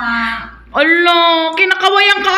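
A person's voice making long, drawn-out vocal sounds: held notes that slide in pitch, broken by a short pause a little before the middle.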